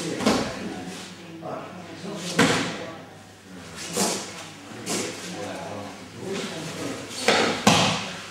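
Thuds and slaps of a body and hands hitting a thin mat as an aikido partner is repeatedly taken down and falls, about six impacts with two close together near the end.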